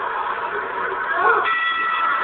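Arena crowd noise, then about one and a half seconds in a steady ringing tone starts suddenly and holds: the bell signalling the start of round one.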